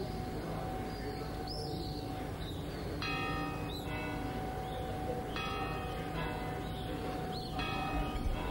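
A church bell tolling three slow strokes, about two seconds apart, starting around three seconds in, each stroke left to ring on.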